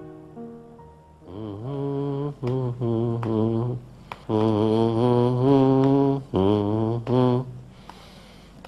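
Background score: after a soft instrumental note fades, a low voice sings a slow, wordless, chant-like melody with wavering vibrato, in four long held phrases with short breaths between them.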